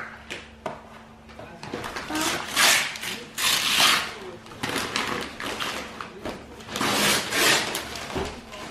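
Paper rustling and tearing in several bursts as a child pulls wrapping paper off a cardboard toy box.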